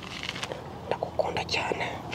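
A person whispering softly in short, breathy bursts.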